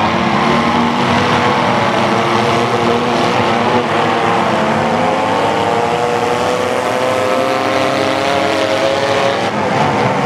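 Several demolition derby cars' engines revving at once, their pitches rising and falling over each other, loud and unbroken.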